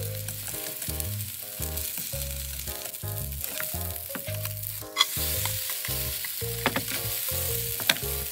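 Bean sprouts bound with egg and potato-starch batter sizzling in hot oil in a frying pan, with a few sharp clicks from a spatula against the pan.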